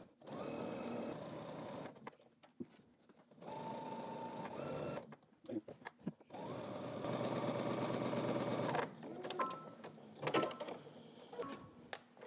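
Electric domestic sewing machine stitching in three short runs of about two seconds each with brief stops between, as it sews in the ditch along a seam. A few small clicks and knocks follow near the end as the stitching stops.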